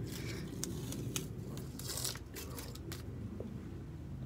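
Blue masking tape being peeled off a leather sneaker, a few short crackling rips, most in the first half.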